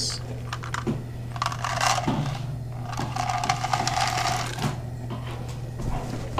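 Wort at a rolling boil in a stainless brew kettle over a propane burner. A steady low hum runs under irregular crackling and bubbling, with two stretches of louder hiss in the middle.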